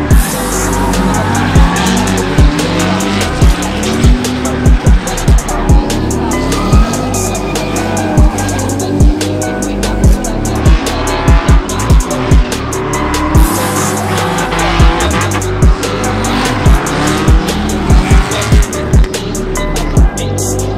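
Drift cars sliding with their engines revving up and down and tyres squealing, under background music with a heavy, steady beat.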